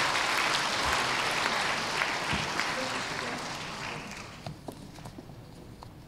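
A congregation applauding, the clapping dying away about four seconds in.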